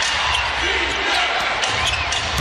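A basketball being dribbled on a hardwood court, with a few sharp bounces near the end, over steady arena crowd noise.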